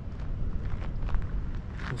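Wind rumbling on the microphone, with a few short scuffs of footsteps on sandy ground about halfway through.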